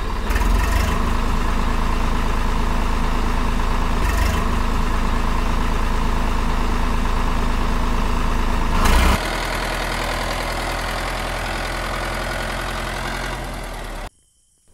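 A motor running steadily with a low hum, as the miniature model tractor drives along; the sound swells briefly and then settles lower about nine seconds in, and cuts off abruptly at the end.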